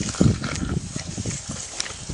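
Animal sounds: a run of low, irregular pulses with a few sharp clicks.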